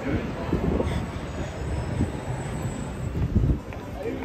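Busy city street noise: a steady low rumble of traffic and passers-by, with a faint high-pitched squeal for a second or two in the middle.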